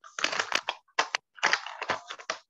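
Computer keyboard typing in several quick runs of keystrokes with short pauses between them.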